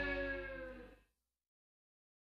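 The song's final held chord on distorted electric guitar, with bass, ringing out and fading while sagging slightly in pitch, then cut off about a second in, leaving silence.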